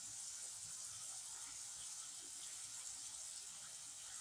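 Faint steady sizzle of chopped onion, tomato and green chilli frying in mustard oil in a kadai.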